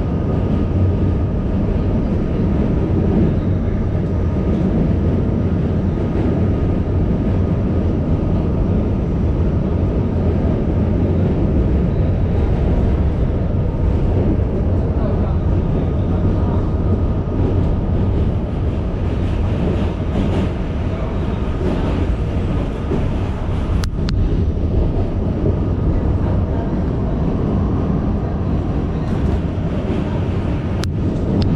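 New York City subway D train running at speed across a steel truss bridge, heard from inside the car: a loud, steady rumble of wheels on the track with a faint steady whine above it.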